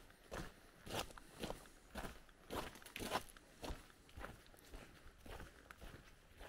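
Footsteps of a person walking on a wet car park surface, a steady pace of about two steps a second, faint.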